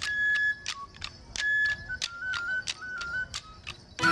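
Folk music for a stick dance: a single high pipe or flute plays a stepped melody over sharp, regular clacks about three a second.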